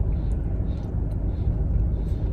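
Steady low rumble of a parked car's engine idling, heard from inside the closed cabin.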